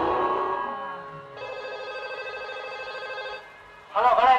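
A held musical chord dies away over the first second, then a steady electronic ringing tone with a fast warble sounds for about two seconds and cuts off.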